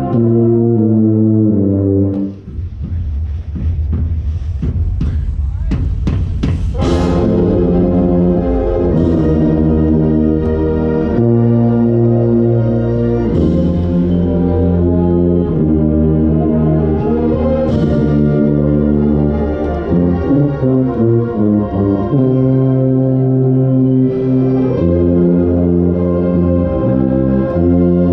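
Drum corps brass section playing held chords, heard from right at a contrabass bugle's bell so its low notes are the loudest part. From about two to seven seconds in, a run of short sharp hits cuts through before the sustained chords carry on.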